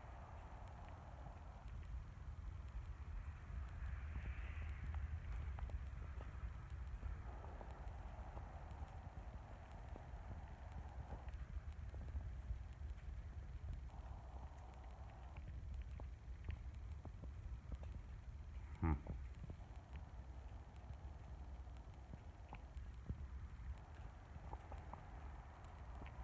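Faint footsteps on a dirt and straw barn floor, with a steady low rumble of handling noise on the microphone. A single sharp knock about two-thirds of the way through.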